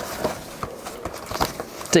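Handling noise from a full-face snorkel mask being turned over in the hands: several separate knocks and rubbing sounds from its plastic frame and straps.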